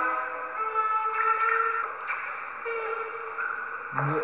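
Music led by a saxophone playing a few long held notes, growing quieter.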